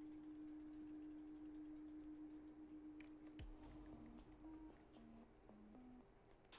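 Near silence: faint background music, one held note and then a few short low notes, with a few faint computer keyboard clicks.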